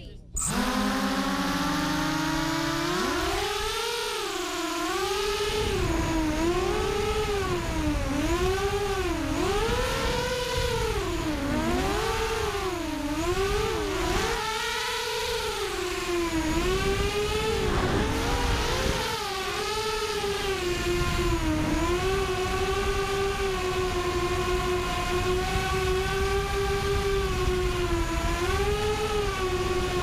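Walkera F210 racing quadcopter's motors and propellers whining, heard from the onboard camera. The pitch climbs and dips over and over with the throttle through turns, then holds steadier near the end.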